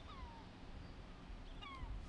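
Two short calls from an animal, each falling in pitch, about a second and a half apart, over a low rumble.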